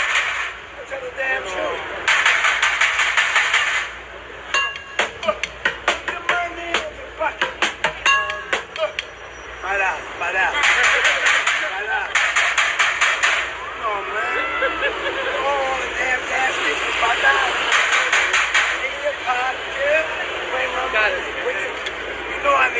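Street bucket drumming on plastic buckets, metal pots and a snare drum with sticks: bursts of fast rolls, the first about two seconds in, with slower single strikes between them. A voice talks at times over the drumming.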